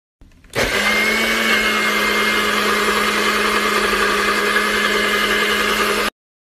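Personal bullet-style blender switched on about half a second in, its motor running steadily at full speed as it blends a brown liquid in the upside-down cup.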